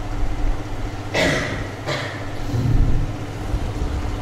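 A man coughing twice, about a second in and again just before the two-second mark, over a steady low rumble.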